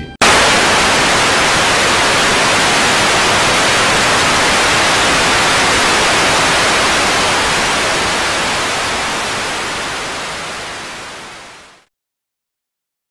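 Television static: a loud, steady white-noise hiss that starts abruptly, then fades away over the last few seconds.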